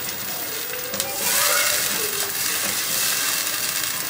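Onion paste sizzling in hot oil in a non-stick pot as it is stirred with a silicone spatula, the water in the paste frying off. The sizzle grows louder about a second in.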